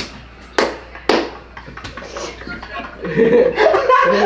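A few short, sharp bursts of sound, then several young men laughing, the laughter building about three seconds in.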